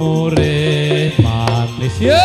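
Javanese gamelan music for tayub: sustained kettle-gong and metallophone tones with sharp drum strokes, and a man chanting through a microphone over it.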